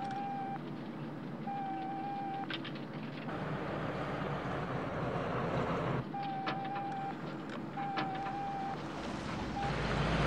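A van driving, with a steady running noise that swells for about three seconds in the middle. Several short, steady electronic beeps and a few sharp clicks from the robot driving it sound over the top.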